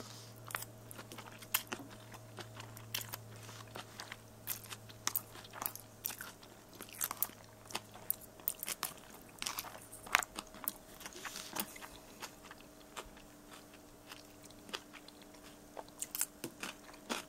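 Close-up chewing of a mouthful of ramen noodles with pickle pieces and raw shredded carrot: quiet, irregular crisp crunches and mouth clicks, scattered throughout.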